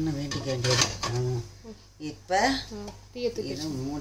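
A woman speaking in short phrases, with light knocks of an aluminium steamer pot and its cloth being handled.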